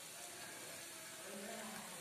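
Batter-coated cauliflower florets deep-frying in hot oil in an iron kadai, a faint, steady sizzle.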